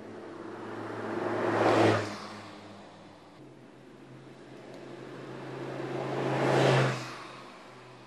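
Audi R8 Spyder's V10 engine and tyres as the car drives past twice: each pass grows louder, peaks and falls away quickly, once about two seconds in and again near the end.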